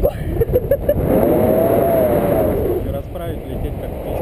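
Wind buffeting the microphone of a camera carried through the air in paraglider flight, a dense rumble that never lets up. A person's voice gives a few short sounds, then one long wordless cry from about a second in, lasting about two seconds.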